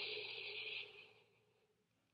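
A person's long breath out, a hushed exhale that fades away about a second in.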